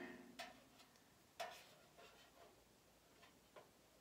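A few faint clicks and taps as small magnets are set onto the door of a black metal decorative truck, the sharpest click about a second and a half in.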